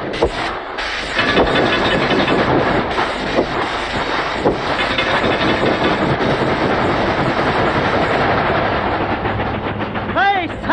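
Steam train running along the rails, a dense, steady clatter and rattle, heard as a sound effect on a 1930s cartoon soundtrack.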